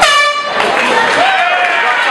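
A single air-horn blast cuts in sharply and lasts about half a second, sounding as the bout is stopped, then shouting voices from the cageside crowd carry on.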